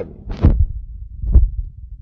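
Two low thuds about a second apart over a low steady hum: handling noise from a phone being moved about and carried, its microphone bumped.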